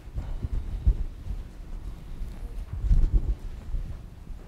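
Irregular dull, low thumps and knocks of hands and a pen on a lectern, carried through the lectern's gooseneck microphone. The loudest come about a second in and again around three seconds in.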